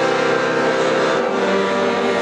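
Piano accordion playing held chords between sung lines: its reeds sound steady, sustained notes, with the chord changing about halfway through.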